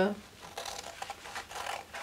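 Scissors cutting through a sheet of brown pattern paper: faint, irregular snips and paper rustle.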